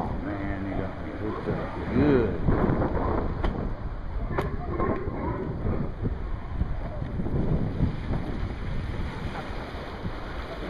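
Wind buffeting the microphone over the sea, with faint voice-like sounds near the start and around two seconds in, and two sharp clicks about three and a half and four and a half seconds in.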